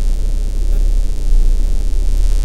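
Steady low rumble with a hiss over it inside a car's cabin, the engine running as the car reverses.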